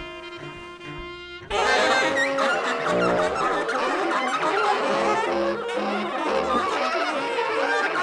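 Live collective free improvisation by an octet of saxophones, clarinets, bassoon, trumpet, cello, vibraphone and drums. It opens with quiet held wind tones, then about a second and a half in the ensemble comes in suddenly much louder with a dense, busy tangle of overlapping notes.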